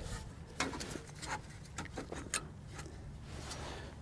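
Faint, scattered clicks and taps of a brake caliper being fitted by hand back over the new pads and rotor, metal parts knocking lightly as it seats.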